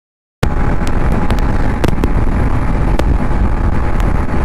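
Sound cuts in suddenly about half a second in: a motorcycle running at highway speed, with wind buffeting the camera microphone over the engine and road noise. A faint steady whine and scattered sharp ticks run through it.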